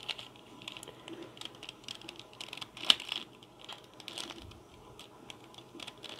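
3x3 mirror cube being turned by hand: an irregular run of faint, quick plastic clicks and clacks as its layers are twisted, the loudest about halfway through.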